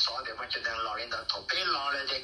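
Speech only: a voice talking steadily in Hmong, telling a story, with a slightly radio-like tone.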